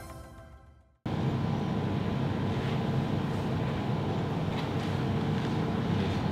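The tail of the intro music fades out in the first second. After a cut comes a steady mechanical room hum with a few faint clicks, as in a changing room.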